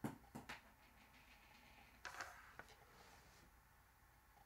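Near silence: room tone with a few faint clicks near the start and a brief soft rustle about two seconds in.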